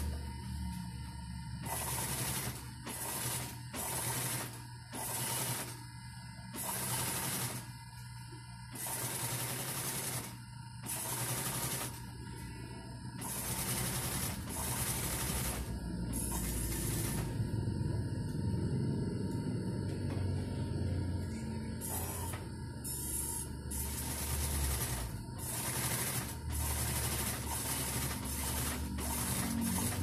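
Industrial sewing machine stitching in repeated runs of one to two seconds, stopping briefly between them.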